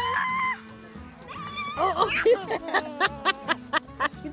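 A young child's high squeal, then quick bursts of giggling and laughter, over background music.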